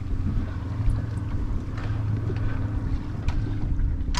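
Boat engine idling with a steady low hum while the boat holds position.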